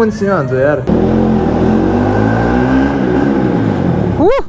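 Motorcycle engine running while riding through an underground car park. It cuts in abruptly about a second in, and its note rises and then falls.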